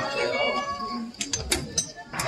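A high-pitched voice calling out with a gliding, wavering pitch, followed by a few short, sharp clicks about a second in.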